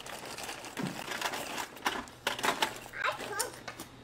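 Faint background voices with scattered light clicks and small handling noises in a kitchen.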